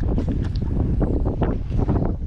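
Wind buffeting the camera's microphone in a steady low rumble, with a few short light knocks and rustles on top.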